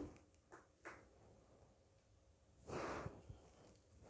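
Near silence: room tone, broken by two faint clicks in the first second and one short breath-like hiss about three seconds in.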